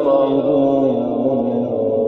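A man's voice in Quran recitation (mujawwad tajweed) holding one long, drawn-out melismatic note, the pitch wavering a little at first and then sinking slowly.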